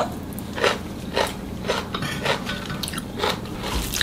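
A person chewing a mouthful of seasoned, blanched minari (Korean water dropwort) namul, with short chewing sounds about twice a second.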